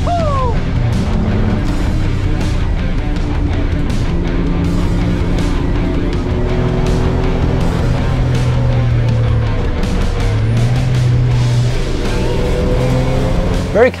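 Suzuki Cappuccino kei car's engine heard from inside the cabin at lap speed, its note rising and falling with the throttle, under background music.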